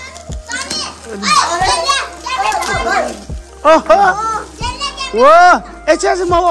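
A group of children talking and calling out excitedly, with drawn-out "oh" cries from about three and a half seconds in, the loudest just before the end.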